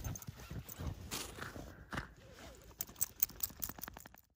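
Footsteps crunching in fresh, deep snow, irregular at first, then a quicker run of crunches in the last second or so.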